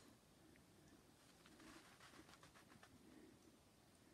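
Near silence, with a few faint soft ticks about a third of the way in.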